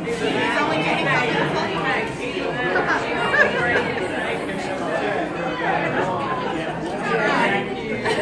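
Many people talking at once around a dinner table: overlapping group chatter with no single voice clear.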